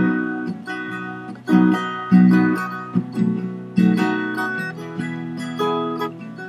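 Music without singing: strummed acoustic guitar chords, struck in a repeating rhythm about once or twice a second, each chord ringing and fading before the next.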